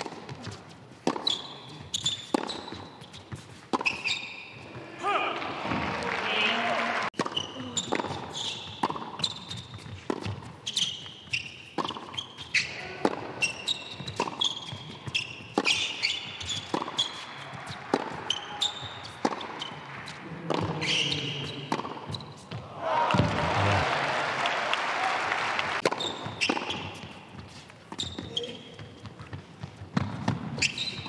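Tennis rallies on an indoor hard court: racket strikes and ball bounces at irregular intervals. Crowd applause breaks out about five seconds in and again around twenty-three seconds in.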